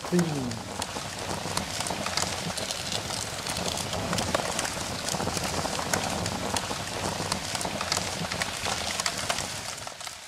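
Fire crackling: a steady hiss dotted with many small, quick pops.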